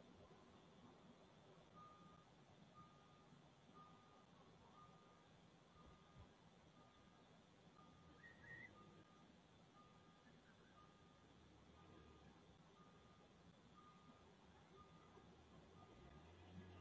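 Near silence, with a faint single-pitched electronic beep repeating about once a second, starting about two seconds in.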